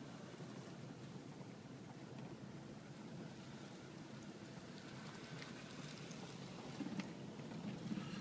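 A car moving slowly along a snowy road: a low steady rumble of tyres and running gear, with a few light ticks and crackles in the second half.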